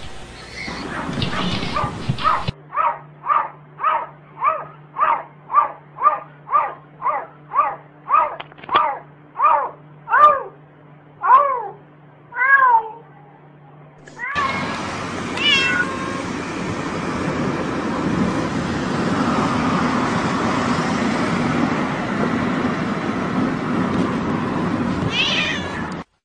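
A domestic cat meowing over and over, about two meows a second for some ten seconds, the last few longer and bending in pitch. A steady noisy background follows, with a few short chirps.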